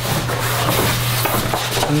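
Sheet of vinyl wrap film being handled, giving a dense rustling crackle, over a steady low hum.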